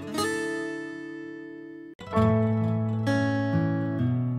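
Background music of strummed acoustic guitar chords, each chord ringing out and fading. A new chord comes near the start, another about two seconds in after a brief drop-out, and another about three seconds in.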